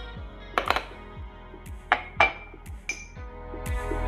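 A metal spoon clinking against a ceramic mug and canister a few times, sharp ringing taps, while instant coffee is spooned into the mug, over soft background music.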